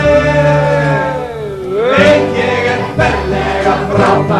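Male voices singing in harmony with acoustic guitars and a double bass: a held chord slides down in pitch about a second in, and a new phrase with guitar strokes starts about two seconds in.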